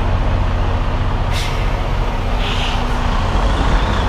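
Diesel semi truck running steadily at idle, with a short burst of air hiss about a second and a half in: the air brakes being released before backing.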